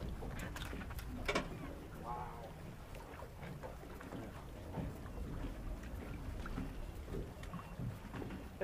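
Steady low outdoor rumble of moving water and air around a small aluminium boat, with a few light knocks and clicks of tackle on the hull, the sharpest about a second in.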